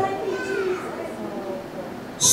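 Quiet, indistinct voices in a large room, much softer than the preaching on either side, with a few faint spoken sounds in the first second.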